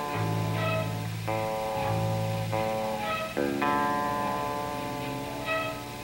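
A live rock band playing an instrumental passage: guitar chords held and changed about every second, with bass notes under them in the first half.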